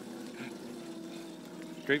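Electric scooter coasting with its motor switched off, making a faint steady hum.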